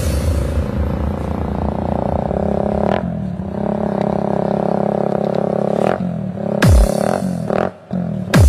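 Electronic dance track in a beatless breakdown: a sustained, low droning synth chord that shifts a couple of times. A few heavy drum hits return near the end.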